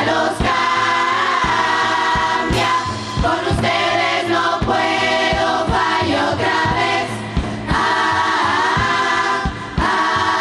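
Carnival murga chorus singing together in full voice over a steady drum beat.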